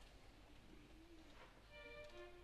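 Near silence in a hall, with a faint held note, before an orchestra begins playing near the end, with violins to the fore.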